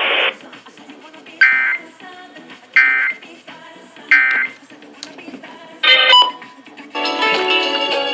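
Three short EAS/SAME digital data bursts, each a harsh, buzzy tone about a third of a second long and about 1.4 s apart, come through a radio's speaker. These are the end-of-message code that closes an emergency alert broadcast. A short beeping burst follows near 6 s, and about 7 s in, music from the FM station resumes.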